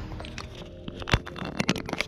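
A few sharp clicks and knocks, one about a second in and a quick cluster near the end, over faint steady background tones.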